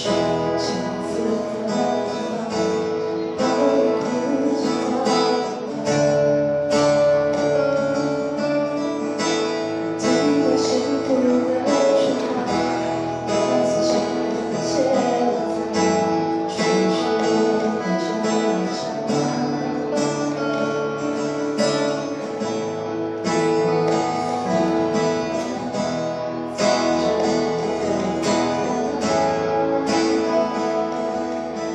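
A live acoustic band playing: two acoustic guitars strumming steadily over cajon beats, with a melody carried on top.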